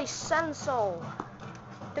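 A person's voice making wordless sing-song sounds that slide down in pitch, twice in the first second, followed by a single sharp click.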